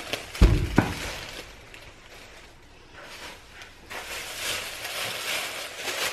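Thin plastic grocery bag rustling as packaged groceries are pulled out of it, with two thumps about half a second and just under a second in.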